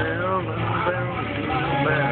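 A man's voice over music, inside a moving van's cabin, with the steady low drone of the engine and road noise underneath.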